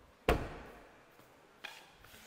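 Volkswagen T-Roc tailgate pushed shut by hand: one solid thud as it latches, about a quarter second in, then a fainter knock near the end.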